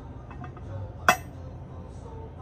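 Polished metal lid of a ring box dropping into place on its base: one sharp metallic click about a second in as its alignment pins seat in their holes.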